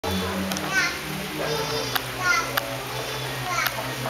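Balinese gamelan playing, its bronze metallophones and gongs holding low ringing tones. High voices call out briefly over it three times.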